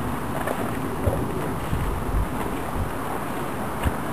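Wind buffeting the camera microphone outdoors: a steady rough rush with low rumbling gusts.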